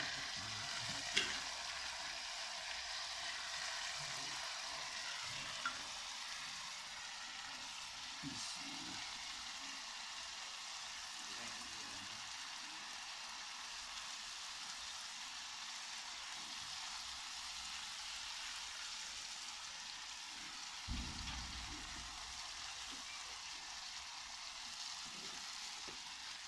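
Tomatoes, green chillies and garlic frying in an aluminium karahi: a steady sizzling hiss, with a few light clicks and a low knock along the way.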